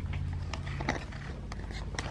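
Guinea pigs gnawing on a bendy bridge in their cage, heard as faint, irregular small clicks and scrapes.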